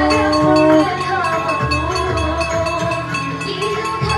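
Ritual hand bells ringing rapidly and continuously during a river aarti, with voices chanting over them. A long, held, horn-like tone stops abruptly about a second in.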